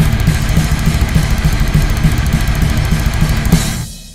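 Death-thrash metal demo recording: a fast drum-kit pattern with rapid cymbal hits over steady bass-drum strokes in a dense, loud mix. Near the end the music drops out abruptly for a brief break.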